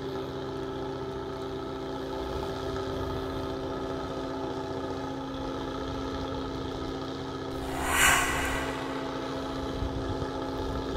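Steady hum of a fishing boat's engine running at idle, with fixed, unchanging tones. About eight seconds in, a short rush of noise rises above it and fades.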